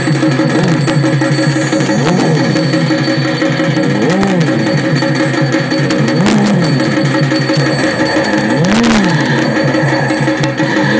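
Loud music over a public-address system, with busy percussion and a pitched tone that rises and falls, repeating about every two seconds.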